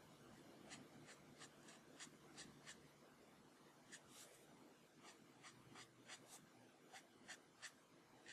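Copic marker nib stroking back and forth on printer paper: faint, quick scratchy strokes, about four a second, in runs with a brief pause about three seconds in.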